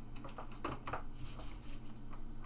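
A few faint clicks and light knocks from objects being handled at a desk, over a steady low electrical hum.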